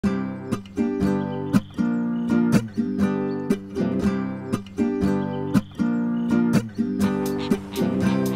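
Background music: an acoustic guitar strummed in a steady rhythm, about two strums a second.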